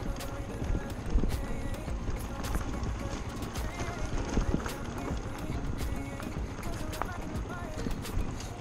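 Small trail motorcycle coasting down a steep, rough dirt track, with a low rumble of engine and wind on the helmet-mounted camera and many small knocks and rattles as it jolts over the bumps.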